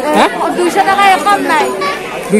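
Only speech: people talking close by, with the chatter of others around them.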